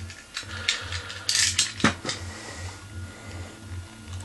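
Clear plastic blister packaging crinkling and crackling in short bursts as it is handled and pulled open, loudest a little over a second in.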